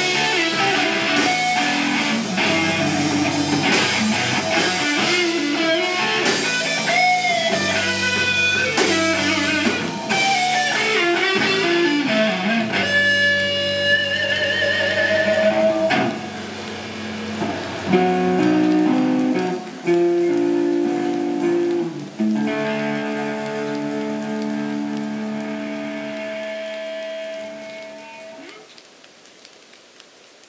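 Live hard rock band playing electric guitars and a Ludwig drum kit at the close of a song. Full, dense playing gives way about halfway through to held notes with vibrato and a few chord hits. A final chord rings on and fades out near the end.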